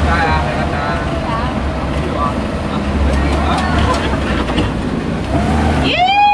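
Tour vehicle's engine running with a steady low rumble as it drives along a dirt track, heard from on board, with faint voices over it.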